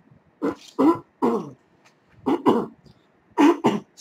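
A man coughing in a fit: three bouts of two or three harsh coughs each, a second or so apart.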